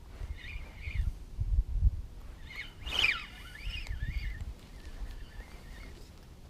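Birds calling in short, wavering phrases, with the loudest call about three seconds in.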